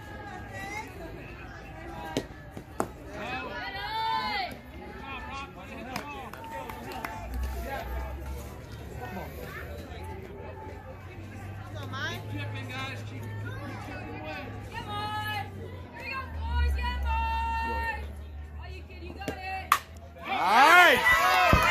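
Spectators and players calling out at a softball game, with shouts and sing-song chants coming and going and a few sharp knocks. Near the end a sharp crack, as the bat hits the ball.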